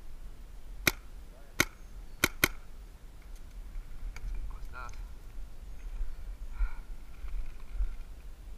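Four sharp paintball marker shots, the last two close together.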